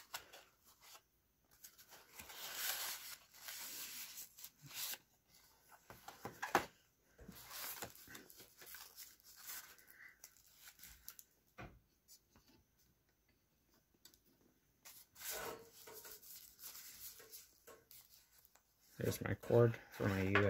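Cardboard box and clear plastic bag being handled: rustling, scraping and crinkling as a computer mouse is slid out of its box and unwrapped, in several spells with a few seconds of lull past the middle.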